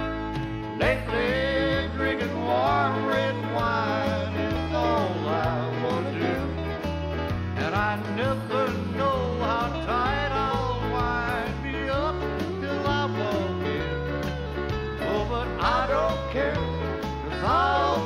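Country band playing an instrumental break between verses. A lead instrument plays a sliding, bending melody over a steady bass line and rhythm guitar.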